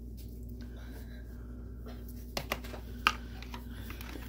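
Quiet kitchen room tone: a steady low hum, with a few light clicks in the second half.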